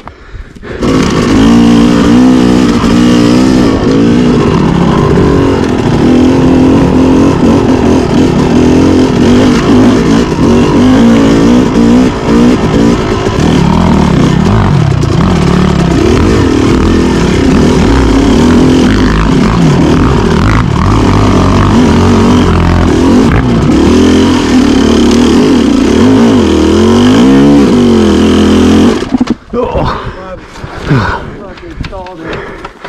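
Yamaha YZ250X two-stroke dirt bike engine, fitted with a flywheel weight, heard from on board while being ridden on rough trail. Its revs rise and fall continuously. The engine sound comes in suddenly about a second in and cuts off near the end.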